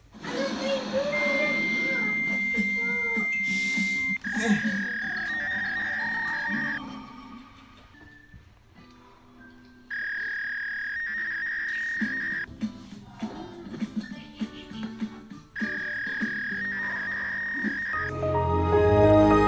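Steady high electronic tones in stretches of two to three seconds, separated by gaps, over crackly noise, as an old laptop is started up. A short laugh comes about five seconds in.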